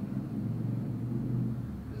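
A low, steady rumble.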